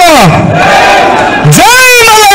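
A man shouting a political slogan into a handheld microphone, with a crowd shouting back in a call-and-response chant. The shouts are long and loud and come round about every two seconds.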